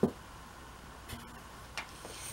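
A sharp knock as a clear acrylic quilting ruler is set down on a cutting mat, followed by two light clicks as it is handled and lined up on the fabric.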